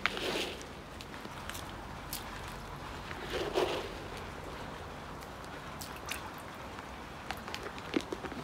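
Fish food pellets scattered onto a goldfish pond, pattering onto the water in two short rushes, one at the start and one about three and a half seconds in, with faint scattered clicks between.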